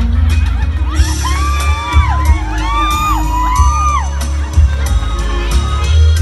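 Backing track of a Thai luk thung song playing an instrumental passage with a steady heavy bass beat, while several audience members whoop and cheer in overlapping high calls, most densely in the first half.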